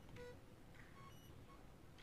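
Near silence: room tone with a few very faint, brief tonal blips.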